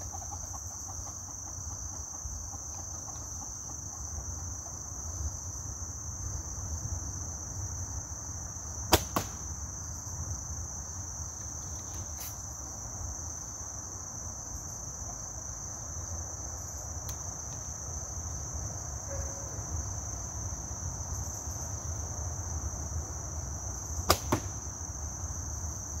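Compound bow shot twice, about 15 seconds apart. Each shot is a sharp snap of the string at release, followed a fraction of a second later by a smaller knock as the arrow strikes the target. Insects buzz steadily and high-pitched throughout.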